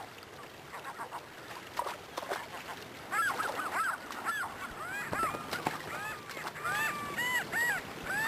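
Gulls calling: a few faint calls at first, then from about three seconds in a rapid run of short calls, each rising and falling in pitch, over the steady rush of river rapids.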